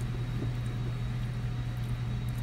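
Room background: a steady low hum with nothing else in it.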